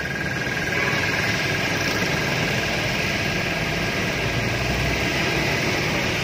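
Toshiba TOSCON air compressor running steadily, its electric motor and pump charging the tank, with an even hum and a faint high whine.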